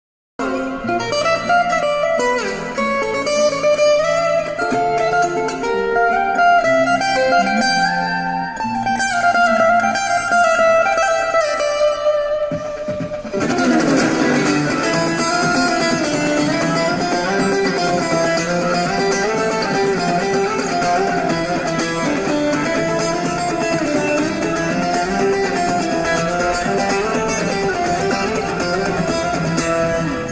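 Solo steel-string acoustic guitar played with no singing: a picked single-note melody for about the first thirteen seconds, then fuller, denser playing.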